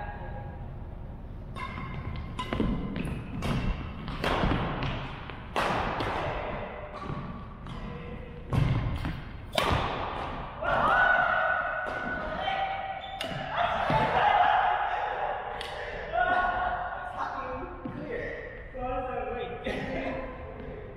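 Badminton rally on a wooden gym floor: a run of sharp racket hits on the shuttlecock and thudding footfalls, echoing in a large hall.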